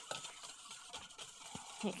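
Wire balloon whisk clicking and scraping against a stainless steel bowl, faint quick irregular ticks as oil is whisked into balsamic vinegar to emulsify a vinaigrette.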